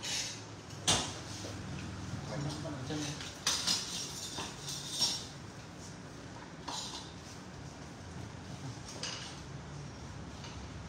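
A few sharp metallic clicks from hairdressing scissors snipping and being handled while cutting hair, about a second in, twice in quick succession around three and a half seconds, and again near five seconds, over faint indistinct voices.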